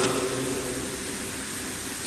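A pause in a man's talk at a microphone: steady background hiss and room noise, with the tail of his voice dying away in the first half second.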